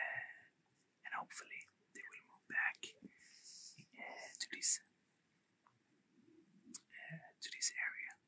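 A man whispering in short phrases.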